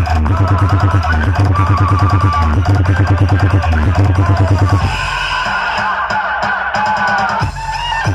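Loud electronic dance music played through huge stacked DJ speaker systems, with rapid, heavy bass pulses. About five seconds in the bass drops away, leaving a higher melodic line, and the heavy bass comes back at the very end.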